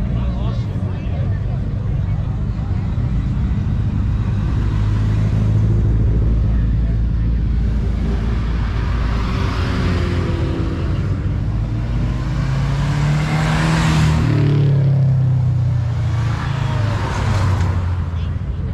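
Cars driving past one after another with engines running; about two-thirds of the way in one engine revs up, rising in pitch as it goes by, then falls away. Crowd voices underneath.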